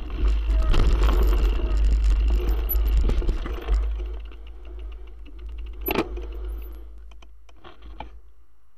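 Mountain bike rolling fast over a dirt woodland trail, with rattling from the bike and heavy wind rumble on the handlebar-mounted camera's microphone. The noise eases off a little past halfway as the bike slows, with a single sharp knock about six seconds in.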